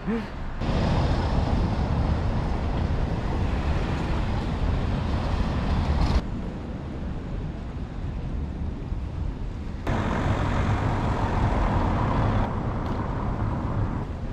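Outdoor street noise with traffic: a steady rush, heaviest at the low end, that changes level abruptly a few times as the footage cuts between takes.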